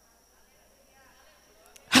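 Near-silent pause in which faint voices murmur, the congregation repeating a phrase to one another. A woman's amplified voice cuts in loudly at the very end.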